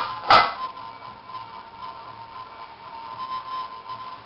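A single sharp click about a third of a second in, followed by a faint steady tone over low background noise.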